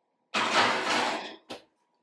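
A baking dish being loaded into a wall oven: about a second of rushing, scraping noise as the oven door and dish go in, then a single short knock about a second and a half in as the door shuts.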